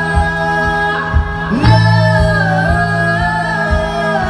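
Live rock band playing, with a woman singing long held notes with vibrato over a steady bass line and a regular kick drum beat.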